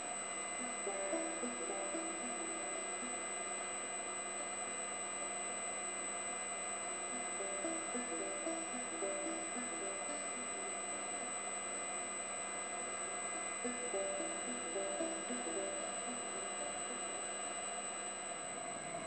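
Baldor three-phase AC motor running steadily at low speed on a Reliance Electric SP500 inverter drive, an even hum of many steady tones topped by a thin, high, constant whine. It runs smoothly, a sign of a healthy drive and motor.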